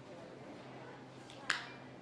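Low room hum with a single sharp click about one and a half seconds in, as papers are handled and set down on the lectern.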